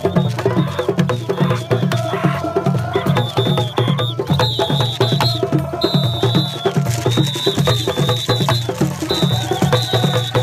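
Traditional Mandinka percussion music: fast, dense hand drumming in a steady rhythm, deep drum strokes under many sharp, clicking strokes. A high wavering tone sounds on and off over it.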